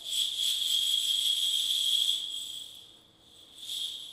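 Small metal hand bells shaken, giving a high ringing tone with a shimmer above it that holds for about two seconds and fades, then rings again briefly near the end.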